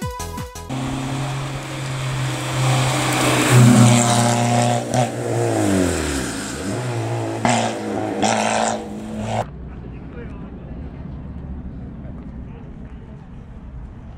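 Citroën Saxo hillclimb car's four-cylinder engine running hard at high revs. Its pitch climbs, drops steeply as the driver lifts for a bend, then climbs again before the sound cuts off abruptly. A quieter outdoor ambience with faint sounds follows.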